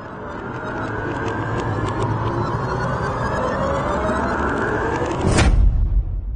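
Cinematic intro sound effect: a rumbling, swelling build-up that ends in a single heavy hit with a deep boom about five and a half seconds in.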